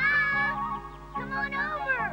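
Animated bear cub crying: a couple of high cries that bend up and down in pitch, over background music with sustained notes.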